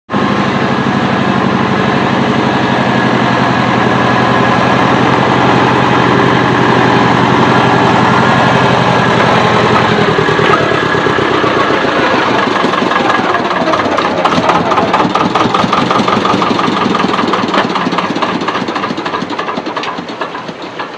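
Thwaites Tusker tractor-backhoe engine running loud and steady as the machine drives along. The engine note changes about halfway through, and the sound falls off in level near the end.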